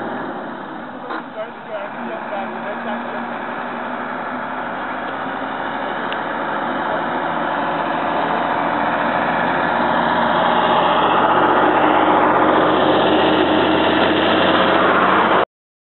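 Vehicle engine running steadily under road and wind noise, which grows louder through the second half as the vehicle picks up speed, then cuts off suddenly just before the end.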